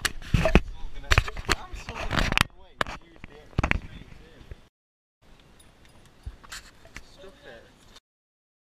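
Knocks, scraping and rustling as several people scramble about in a cramped space, mixed with bursts of voice. The sound is busiest in the first half, cuts out for about half a second just past the middle, then continues as quieter rustling with a few clicks.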